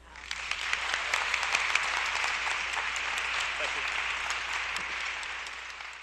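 Audience applause that breaks out suddenly at the close of a solo marimba piece and holds steady as dense clapping.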